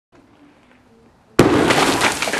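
An explosive charge inside a candy house goes off with a sudden loud blast about one and a half seconds in, followed by a dense noisy rush as the debris scatters.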